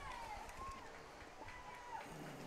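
Faint, distant human voices calling out across the field, with a drawn-out call near the end.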